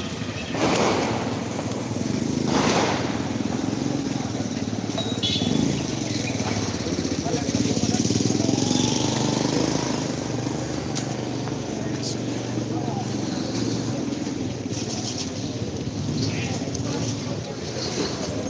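Street crowd noise with people shouting and calling out, and two loud bangs about two seconds apart near the start.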